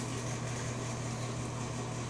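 Steady low hum under an even hiss: background room noise with no distinct event.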